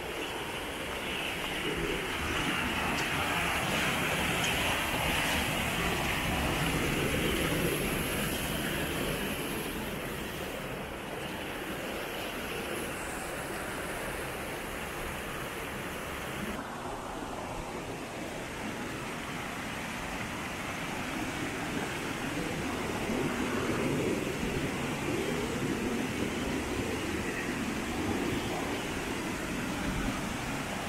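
Steady rushing and splashing of a small mountain waterfall and stream cascading over granite boulders. The sound changes abruptly about halfway through.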